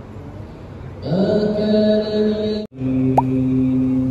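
A man's voice chanting in long, held melodic notes in the style of Islamic recitation, starting about a second in. It breaks off abruptly for an instant just before the three-second mark and resumes on another sustained note, with a brief rising squeak soon after.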